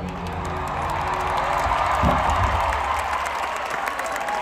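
A live band's last sustained chord dies away in the first second or so while a large arena crowd cheers and applauds at the end of the song.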